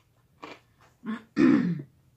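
A woman clearing her throat while eating: a few short throat sounds, then one loud, low clearing about a second and a half in.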